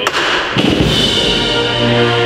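A sharp knock, then a wind band strikes up a procession march. Low drum thuds come in about half a second in, then brass and woodwinds hold chords over a deep low-brass note.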